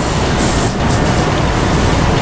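A steady rushing noise with no speech.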